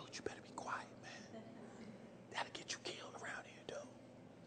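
A person whispering faintly, in short breathy hisses with a few soft clicks.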